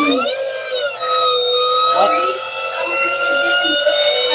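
A loud, steady, siren-like electronic tone held on one pitch. Its upper notes bend up and back down once in the first second, then it holds level, with faint talking underneath.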